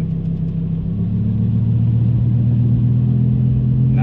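Lamborghini Huracan LP580-2's 5.2-litre V10 idling steadily. About a second in, the idle steps up and grows louder and fuller as race mode opens the exhaust valves.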